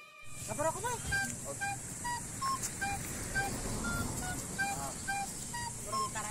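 Faint voices talking quietly, in short pitched snatches, over a steady high hiss.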